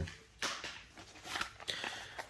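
Brief rustling and scuffing of gear being handled and taken out of a fabric sling bag, with one short rustle about half a second in and fainter handling noises after it.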